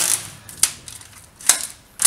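Packing tape being pulled off its roll, the ripping screech dying away just after the start, then two short crackles of tape about half a second and a second and a half in.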